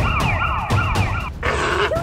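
Electronic siren-like wail, its pitch sweeping down again and again in quick succession. It cuts off about one and a half seconds in and gives way to a short, harsher electronic burst.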